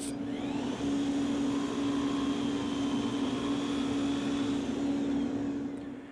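A stationary woodworking milling machine runs steadily under dust extraction: a constant hum under an even rush of air. It fades away near the end.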